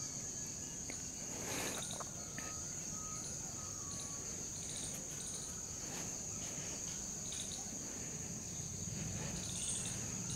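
Insects trilling in a steady high-pitched drone. A few faint short whistled notes come between about two and four seconds in.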